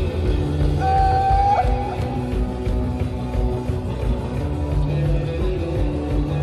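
Post-punk rock band playing live: drums in a steady beat under heavy bass and electric guitar, with one held high note about a second in that bends as it stops.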